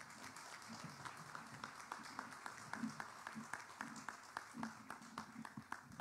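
Audience applauding, faint, with separate hand claps heard a few times a second, welcoming a speaker to the lectern.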